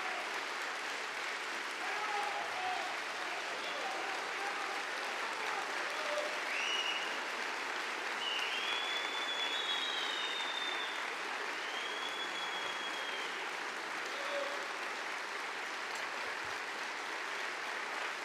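A large audience applauding steadily in a standing ovation, with a few short high-pitched calls rising above the clapping midway.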